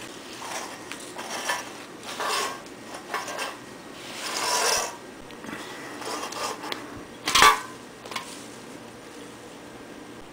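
An aluminium beer can knocking, clinking and scraping on a hard floor in a run of short bursts, with a longer rustling scrape about four seconds in and the loudest sharp knock about seven seconds in.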